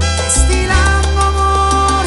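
A salsa band with accordion, bass and percussion playing an instrumental passage, with one long held note near the middle.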